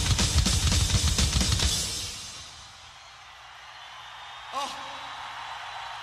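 Rock drum kit hammered in a fast, crashing fill of drums and cymbals that dies away about two seconds in. After it, a large crowd cheers, with a single shout about three-quarters of the way through.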